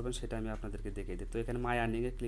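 A man's voice speaking, over a steady low hum.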